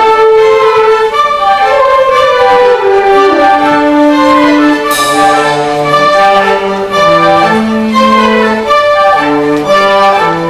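A school concert band of violins, saxophones, flutes and drum kit playing a piece with sustained melody notes. A cymbal crash rings out about halfway through.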